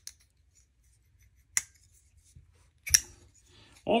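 UrbanEDC F5.5 titanium folding knife being worked by hand: three sharp metallic clicks of the blade snapping open and shut, about a second and a half apart. The last click is the loudest and doubled.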